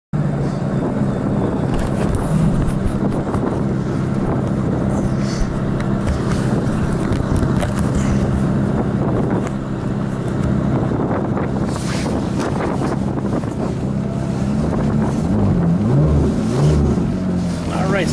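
Ferrari F430's V8 engine idling steadily, heard from the open-top cabin. Scattered bumps and rubbing come from the camera being handled close to the microphone.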